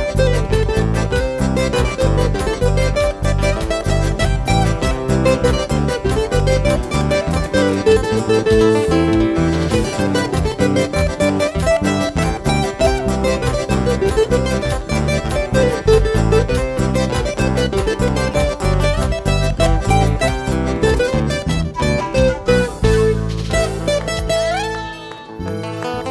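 Huayno band playing an instrumental break: a lead acoustic-electric guitar picks a quick melody over electric bass and keyboard to a steady dance beat. Near the end the beat stops on a held chord.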